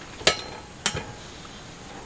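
A metal canning funnel clinking twice against a glass canning jar, two sharp knocks with a brief ring about half a second apart, as the funnel is handled and lifted off the packed jar.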